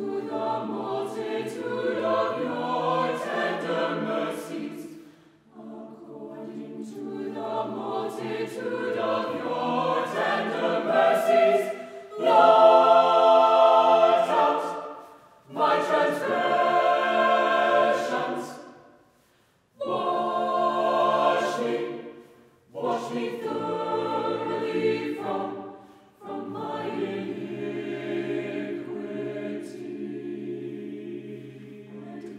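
Mixed-voice choir of men and women singing together, in phrases broken by short pauses, swelling loudest about twelve seconds in.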